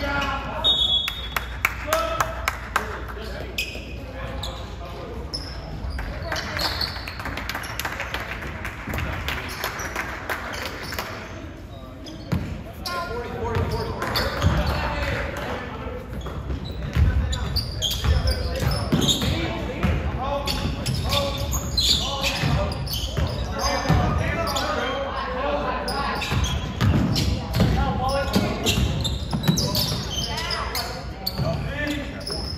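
A basketball bouncing on a hardwood gym floor, with many short knocks throughout, among indistinct voices of players and spectators calling out, echoing in a large gym.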